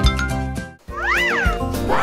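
Background music drops out briefly, then a single cat meow rises and falls in pitch over about half a second, and the music comes back in.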